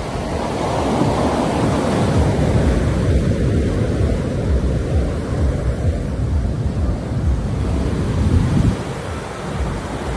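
Ocean surf breaking and washing up a sandy beach, with wind rumbling on the microphone; the low rumble eases about nine seconds in.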